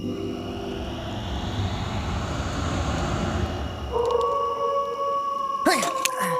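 A long animal howl sound effect begins about four seconds in, a held note that sinks slightly in pitch. Before it comes a swell of rushing noise like wind, and a sharp, sudden sound cuts in just before the end.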